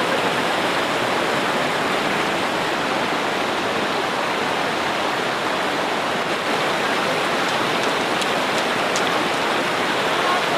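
Flood-swollen river rushing past in a strong, turbulent current: a steady, even rush of water.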